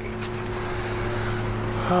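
Steady low drone of a vehicle running, heard from inside the cabin, with a constant hum holding a few fixed low tones.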